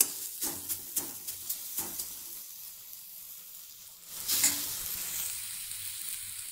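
Garlic-chilli masala sizzling in a little oil in a metal kadai. A steel spatula stirs and taps against the pan in short strokes for the first two seconds, and there is a louder stir about four seconds in, with a steady sizzle underneath.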